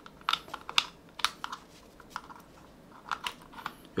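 Light plastic clicks and taps as a magnetic charging cable is handled and its USB plug is pushed into a power bank. About a dozen short scattered clicks, with more in the first second and near the end.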